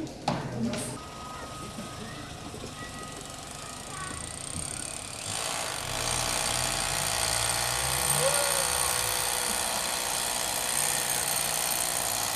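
Low room sound with faint voices, then from about five seconds in a steady, even hiss with a thin high whine that stops just at the end.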